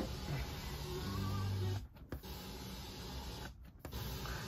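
Sansui 3900Z receiver's FM tuner hissing with static while being tuned between stations, with faint bits of a broadcast coming through, cutting out briefly twice as the frequency steps.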